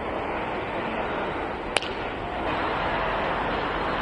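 Steady outdoor rushing noise at a baseball field, a little louder in the second half, with one sharp high click just under two seconds in.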